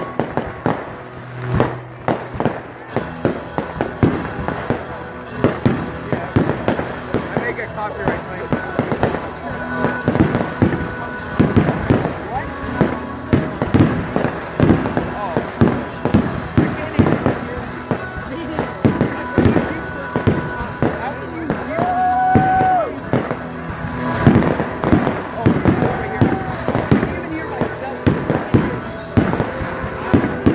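Fireworks going off in quick succession: a continuous run of sharp pops and bangs, with voices and music underneath.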